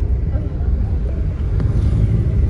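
Low, steady rumble of a car driving, heard from inside the cabin.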